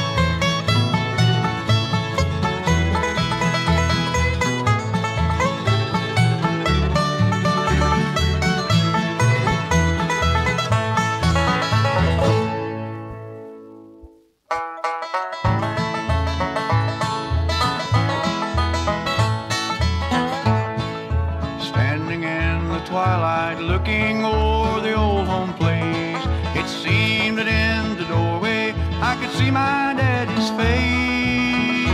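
Bluegrass band music led by banjo over guitar and a steady bass beat. It fades out about halfway through, and after about a second of silence the next bluegrass instrumental starts up abruptly.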